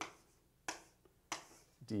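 Two short, sharp taps about half a second apart, the sound of writing on a board during a calculus lecture, between spoken words.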